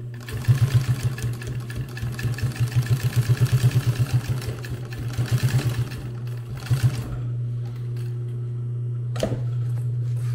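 Industrial sewing machine stitching through layers of nylon webbing and 1000D Cordura in bursts, about seven stitches a second, over the steady hum of its motor. A short last burst comes near seven seconds, then a single click a little after nine.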